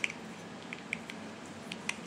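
A few short clicks from a small plastic bottle of peel-off face mask being handled and worked open in the hands, the sharpest right at the start and near the end.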